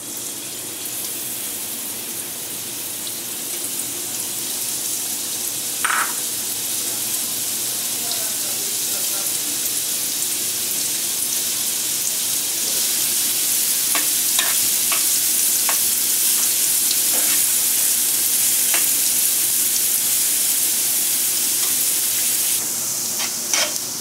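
Chopped onion sizzling as it fries in hot oil in a non-stick pan, the sizzle growing gradually louder. A few light clicks of a spatula against the pan come in the second half.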